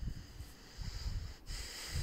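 Irregular low rumbling buffets of wind on a phone microphone outdoors, with a breathy hiss in the second half.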